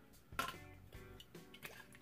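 Faint background music with a few soft, wet squishing sounds of witch hazel being worked between the hands and onto the face after a shave.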